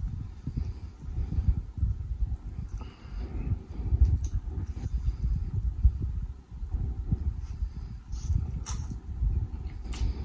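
Close-miked chewing and wet mouth sounds of a person eating saucy spicy noodles, an irregular run of soft smacks with a few sharp little clicks.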